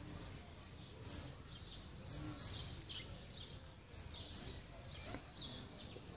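Small birds chirping: short, high chirps, several in quick pairs, over faint outdoor background noise.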